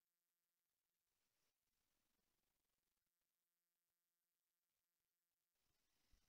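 Near silence: a pause in a recorded webinar.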